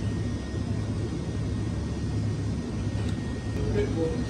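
A steady low hum fills the background, with a person quietly chewing a fried fish cake and a couple of faint clicks near the end.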